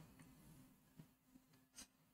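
Near silence: a faint steady low hum of room tone, with two brief faint noises about a second in and near the end.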